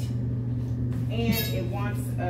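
A woman's voice speaking from about a second in, over a steady low hum.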